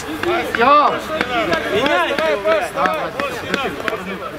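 Voices calling and shouting across an outdoor football pitch during play, with several short sharp knocks among them.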